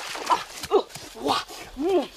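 An animal giving a series of short calls, four of them about half a second apart, each rising and then falling in pitch.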